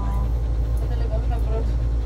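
A steady low rumble of background machinery or traffic, with faint voices over it.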